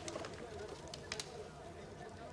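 Sheets of paper rustling as they are handled and leafed through, with a couple of short crisp rustles about a second in, over a faint low background.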